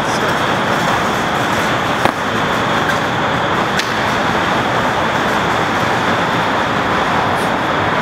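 Steady city traffic noise at a constant level, with a couple of faint clicks about two and four seconds in.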